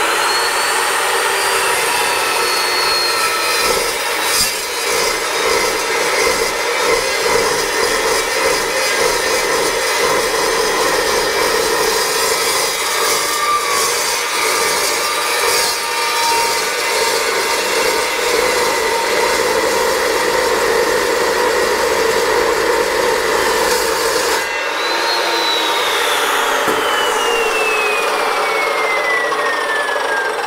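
Evolution S355MCS 14-inch metal-cutting chop saw with a carbide-tipped mild-steel blade cutting through a steel railroad rail. The motor's whine rises as it comes up to speed in the first second or so, then a loud, steady cutting noise runs for about 24 seconds with the motor holding its speed without bogging down. The cut ends and the blade's whine falls slowly as it winds down.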